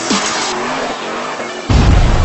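Produced intro sting: electronic music with a car sound effect of a speeding car and tyre noise, cut by a sudden deep bass hit near the end.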